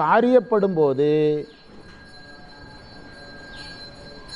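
A man lecturing in Tamil, his last word drawn out into a held, low hum that stops about a second and a half in. After that only a faint background hiss remains, with thin steady high tones.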